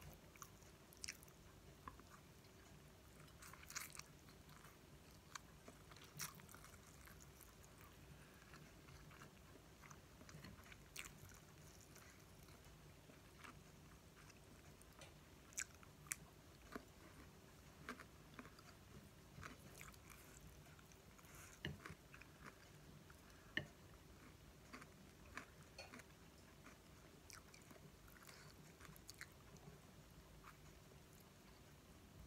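Faint close-up eating sounds: a person chewing instant fried noodles, with scattered soft clicks and a few sharper crunches, one about halfway through as a cucumber slice is bitten.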